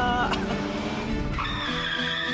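A car's tyres screeching in a skid, a high wavering squeal starting about one and a half seconds in, over a film soundtrack with background music and a brief click near the start.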